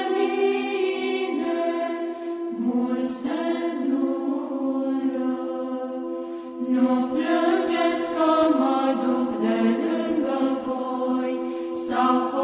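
A choir singing a slow chant, several voices holding long notes in harmony and moving to new pitches every few seconds.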